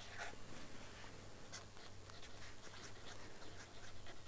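Pen writing on paper, a series of short, faint scratching strokes as a word is written, over a low steady hum.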